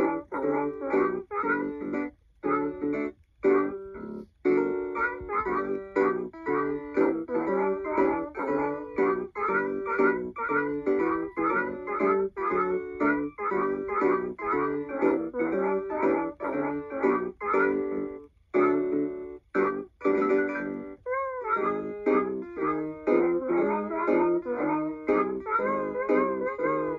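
B. Toys Woofer toy guitar playing a pre-recorded tune through its small built-in speaker in a plucked-guitar voice. It is a quick, steady run of short notes with a few brief breaks, and some wavering notes near the end.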